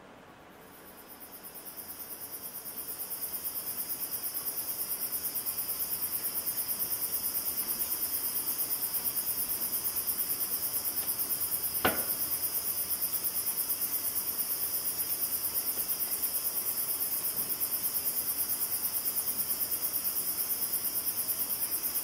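Night chorus of crickets and tree frogs from a phone recording played back: a steady, high, rapidly pulsing trill that fades in over the first few seconds. One brief knock about halfway through.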